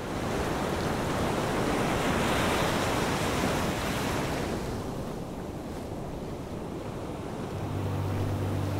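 Sea surf washing up a sandy beach: the rush fades in, is fullest about two seconds in, then subsides into a softer wash as the wave draws back. A low steady tone comes in near the end.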